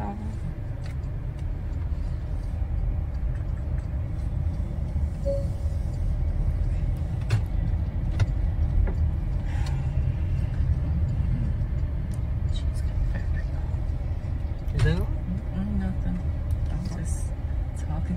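Steady low rumble of a car heard from inside its cabin, with a few faint clicks and a brief voice near the end.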